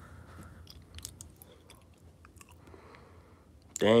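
A quiet pause with faint, scattered small clicks over room tone, then one spoken word near the end.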